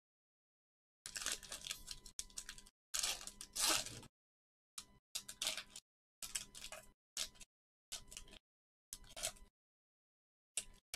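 Foil trading-card pack wrapper being torn open and crinkled for about three seconds, then a run of short rustles as the cards are worked out of the wrapper.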